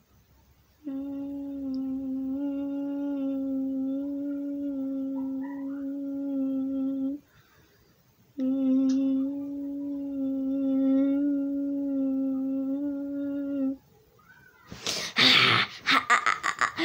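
A person humming two long, steady, even-pitched notes of about six seconds each, with a short pause between them, followed near the end by a sudden loud shout.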